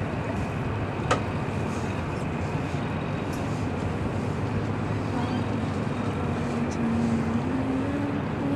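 Steady low drone of a fishing boat's engine running slowly, with a single sharp click about a second in.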